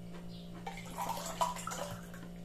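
A drink poured from a plastic bottle into a drinking glass, splashing and gurgling from about half a second in until near the end.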